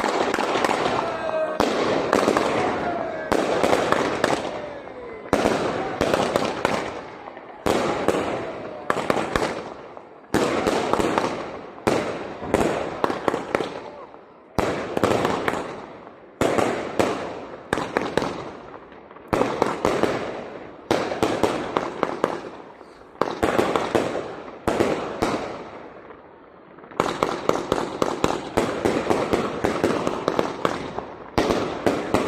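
Aerial fireworks firing in a series: a sharp launch and bang every second or two, each dying away in crackle. Near the end the shots come thick and fast.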